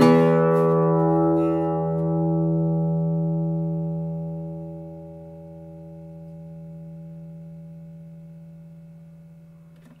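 Cutaway flamenco guitar: one chord struck at the start and left to ring. It sustains for about ten seconds, fading slowly and evenly, which shows off the instrument's long sustain.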